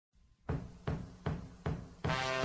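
Four evenly spaced low drum thumps, about two and a half a second, opening a piece of intro music.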